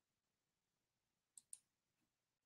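Near silence: room tone, with two faint, short clicks close together about a second and a half in.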